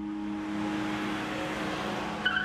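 A car's engine and tyres on the road, a steady rushing sound over a low held music drone.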